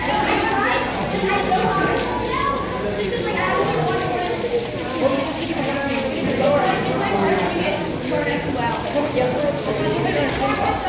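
Murmur of many people talking in a room, with rapid small clicks of a YuXin 4x4 speed cube being turned during a timed solve.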